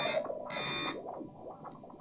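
Electric guitar through effects pedals: a phrase stops, a short chord sounds about half a second in, then the sound dies away to faint ringing.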